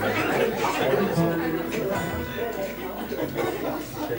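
Audience chatter and a laugh, with an acoustic guitar being strummed.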